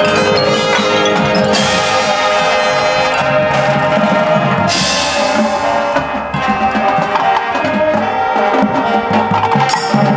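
High school marching band playing live: held brass and woodwind chords over bell-like mallet percussion, with two loud crashes about a second and a half and five seconds in.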